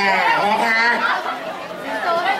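Speech: a woman talking in Thai, with background chatter.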